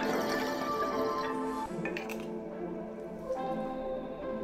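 A dark, UK-drill-style melody loop playing back from the FL Studio project, with sustained pitched notes that shift every second or so.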